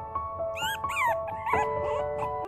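Four-week-old Mi-Ki puppies whining: a run of short, high-pitched rising-and-falling whines starting about half a second in, over background music.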